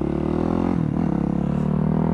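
Yamaha supermoto's single-cylinder four-stroke engine running steadily under way. Its note dips briefly and comes back up just under a second in.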